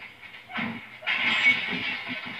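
A smoking car from a film soundtrack heard through a TV: a hissing rush with an uneven low chugging under it, starting about a second in after a short thud.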